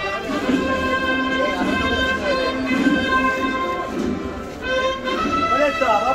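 Brass band music with long held notes, with people's voices over it near the end.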